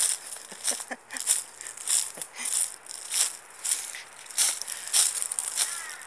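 Dry leaves and twigs crunching and rustling as a person walks and pushes through scrub, in irregular crisp crunches about twice a second.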